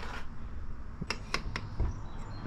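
Handling noise: a few sharp clicks about a second in and a dull thump near the end, as a small metal pulley is set down on a wooden workbench.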